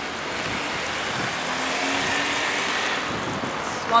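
A vehicle passing on a city street: a steady rush of road noise that swells to its loudest about two seconds in, then eases.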